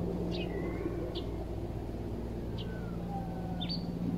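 Small birds chirping, with several short high chirps and a few gliding whistles, over a steady low hum.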